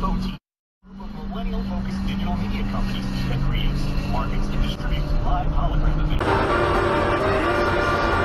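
After a brief dropout to silence near the start, a motor vehicle engine drones steadily under faint voices. Music comes in abruptly about six seconds in.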